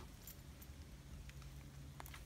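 Near silence: faint background hum with a few soft ticks.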